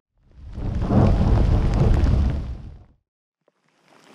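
A single peal of thunder, heavy and low. It builds over the first second, holds for about a second, and dies away by about three seconds in.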